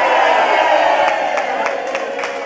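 A crowd of people cheering and shouting together, with rhythmic clapping starting about halfway through.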